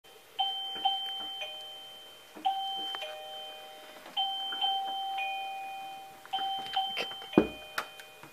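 Two-tone ding-dong doorbell chime, a higher note falling to a lower one, rung four times about two seconds apart, each ring fading slowly. Near the end a loud thud and a few sharp clicks.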